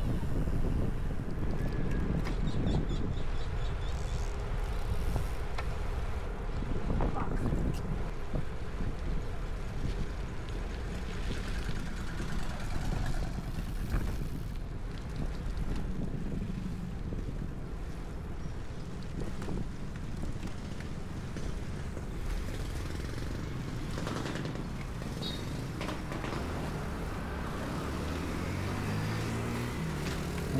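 Wind rushing over an action camera's microphone while riding a road bike, with a steady low rumble of tyre and road noise.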